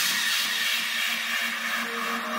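Hardcore electronic track in a breakdown: the drums and bass have dropped out, leaving a slowly fading wash of noise over a steady held synth note, with quiet higher synth notes entering near the end.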